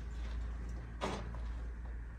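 Footsteps on a rubble- and plaster-strewn floor, with one loud scuffing step about a second in, over a steady low rumble.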